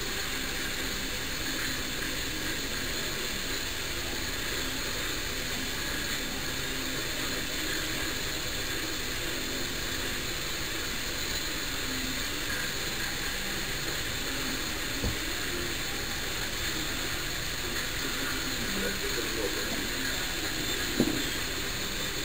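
Steady outdoor background hiss, with a faint knock partway through and a sharper click near the end.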